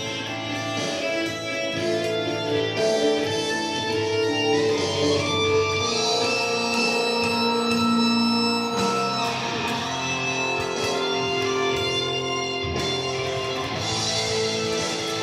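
Kiesel LP-style solid-body electric guitar played as a melodic single-note line, with notes held and ringing into one another.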